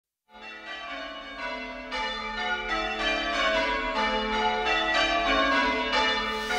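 A peal of church-style bells in a song's intro, strike after strike overlapping and ringing on, growing steadily louder.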